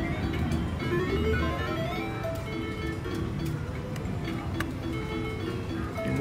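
Cleopatra Keno video keno machine's electronic game sounds: a run of quick rising chimes as the numbers are drawn, over a repeating plucked-sounding synthesized tune.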